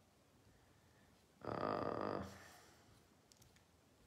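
A man's drawn-out hesitant "uh" about one and a half seconds in, followed near the end by a few faint clicks over quiet room tone.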